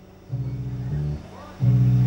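Live band playing a sparse bass line with no drums: low notes held for about half a second to a second each, with short gaps between them.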